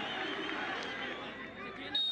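Stadium ambience from a football match: a steady murmur of crowd chatter and distant voices, easing slightly toward the end.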